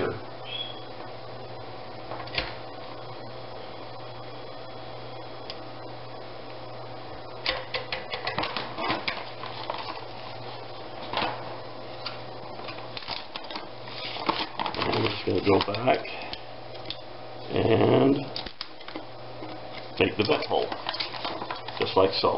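Foil food-storage bag crinkling and rustling as it is handled, in scattered bursts of crackle that come more often in the second half, over a steady low hum.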